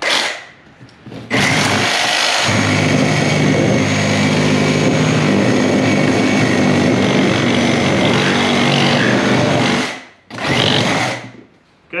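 Milwaukee M18 Super Sawzall cordless reciprocating saw, set to straight non-orbital stroke and fitted with a metal-cutting blade, sawing down through a shoe's fabric and sole. A brief blip of the trigger, then a steady run of about eight seconds, and another short burst near the end.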